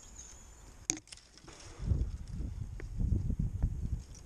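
A single sharp snip of hand secateurs cutting through a thin twig about a second in, followed by a low rumbling rustle of branches and handling close to the helmet-mounted camera over the last two seconds.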